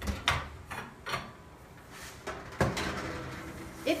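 Oven door pulled open and a metal rimmed baking sheet slid out over the oven rack: a series of clunks and metal clatters, with a low hum in the second half.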